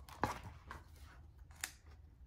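Faint handling of a book's paper pages: a few soft clicks and rustles, the sharpest about a quarter-second in and another near the end.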